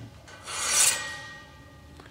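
A metal turbulator strip scraping against the inside of a steel boiler fire tube as it is drawn out: one rasping slide that swells and fades within about a second, leaving a faint ringing tone as it dies away.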